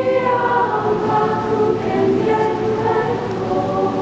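Student choir singing, holding long sustained chords that shift every second or so.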